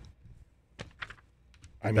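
A quiet pause with a few faint, sharp clicks about a second in, then a man's voice starts again near the end.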